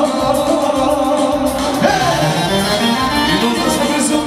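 Live band dance music played loud through a PA, with a singer over keyboard and a steady beat.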